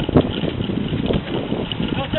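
Wind buffeting the microphone, a steady rough rumble.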